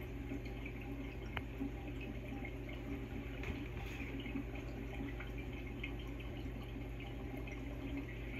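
Water circulating in a saltwater reef aquarium: a faint, steady trickle of moving water over a low, even hum.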